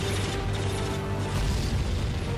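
Metal tank tracks clanking and rattling, with a low rumble, in two rattling spells, the second about halfway through, over background music.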